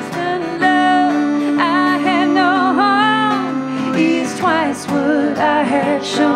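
A woman singing a folk-country song with a wavering vibrato on held notes, accompanied by an acoustic guitar.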